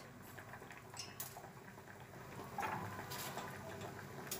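Faint bubbling of water simmering in a stainless steel pot of quinces, with a light click about a second in and a brief knock of something dropping into the pot a little later, as cinnamon sticks go in.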